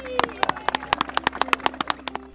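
A few people clapping their hands, about eight claps a second in a steady run.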